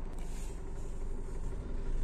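Car engine and road noise heard from inside the cabin as the car moves off slowly, a steady low rumble.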